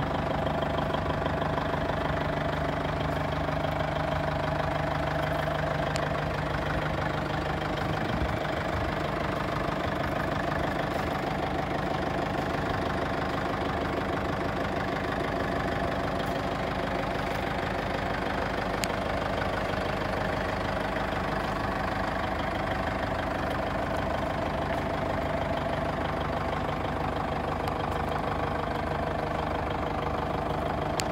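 Diesel engine of a Maximal FD30T forklift running steadily at low revs while the forklift is driven slowly.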